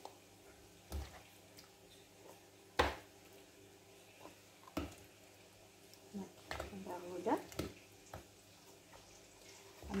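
A few short knocks of a metal spoon against the bowl, the loudest about three seconds in, with soft wet sounds as stewed vegetable filling is spooned into a flatbread.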